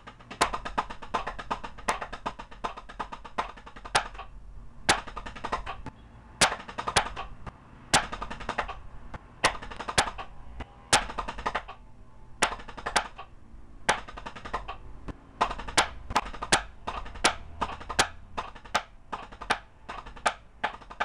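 Drumsticks on a rubber practice pad playing rudiments: fast, even rolls of stick strokes, with louder accented strokes about once a second.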